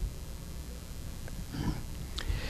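A pause in a man's lecture: low steady room rumble, with a short soft breath from the speaker about one and a half seconds in and a faint click or two.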